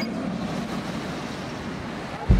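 A light-rail tram passing close by: a steady rushing noise with no distinct tones.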